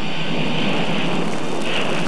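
Steady rushing noise of volcanic steam venting.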